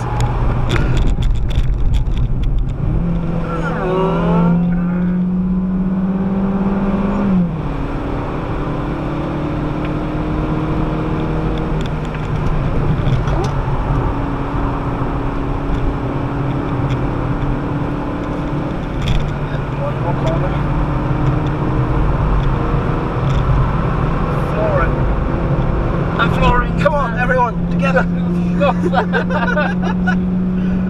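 Citroën DS3's 1.6-litre petrol engine heard from inside the cabin at speed, over tyre and road noise. The engine note climbs for a few seconds, drops abruptly about seven seconds in and holds lower. It climbs again in the last few seconds as the car accelerates hard.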